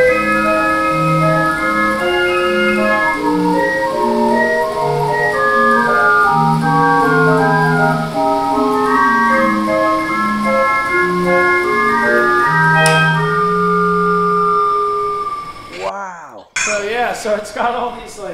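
Calliaphone, an indoor calliope with brass whistles, playing a tune by itself from its player roll: a melody over a repeating bass line. The music stops about fifteen seconds in, followed by a few short warbling sounds.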